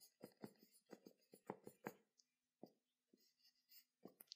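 Handwriting: a series of short, faint, irregular strokes as words are written out by hand.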